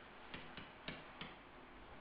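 Three faint, short clicks from a stylus tapping on a writing tablet while writing, over a low hiss.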